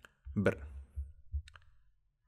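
A few faint clicks and low knocks from a stylus on a drawing tablet while a digit is being written, after a single spoken word.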